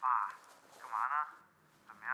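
A man's voice heard through a telephone earpiece, thin and band-limited, speaking two short phrases.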